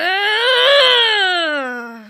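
A cartoon character's voice giving one long, drawn-out wordless cry of anger and dismay. Its pitch rises, then slides down as it fades away.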